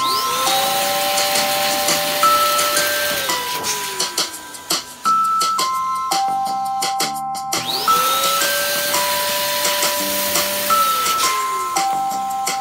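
Electric balloon pump inflating a clear latex balloon, running twice: each time its motor whine rises quickly to a steady pitch with a hiss of rushing air, holds for about three seconds, then sinks away as it stops. The second run starts about eight seconds in. Light background music plays throughout.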